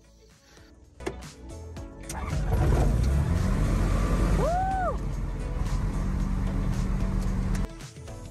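Light aircraft's propeller engine coming up to takeoff power and running loud and steady through the takeoff roll and lift-off, heard from inside the cockpit, with background music under it. A short tone rises and falls about halfway through, and the engine sound cuts off suddenly just before the end.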